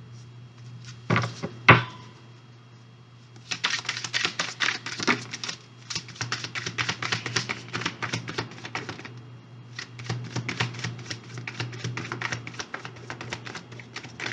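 Tarot cards being shuffled by hand: long runs of rapid papery clicking, after two sharp knocks about a second in. A low steady hum lies underneath.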